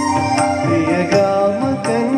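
A man singing a Malayalam song into a stage microphone, the melody gliding up and down over instrumental accompaniment with a steady beat.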